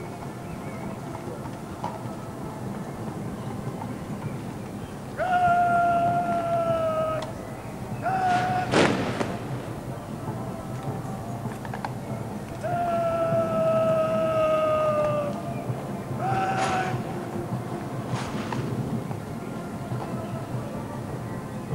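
Two long, drawn-out shouted words of command on a parade ground, each held for about two seconds and sagging slightly in pitch, then clipped off by a short final word. After each comes a sharp crack from the troops' arms drill.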